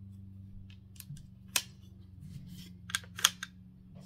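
Sharp metallic clicks of an AR-15-style rifle being handled, about six in all, the two loudest about a second and a half apart, over a low steady hum.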